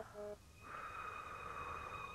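A woman blowing out a long breath of air. It starts about half a second in and lasts about a second and a half.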